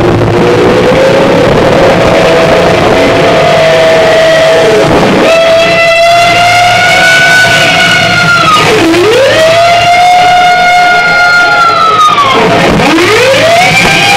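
Live rock band led by a distorted electric lead guitar holding long sustained notes that dive steeply in pitch and swoop back up, three times, over bass and drums, recorded loud.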